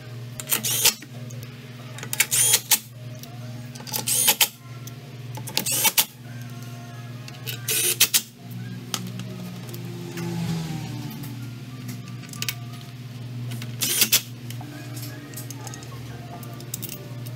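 Cordless driver running in short bursts, about six times, as it spins out the bolts of a Vespa Sprint 125's CVT transmission cover, each burst a brief loud rattle.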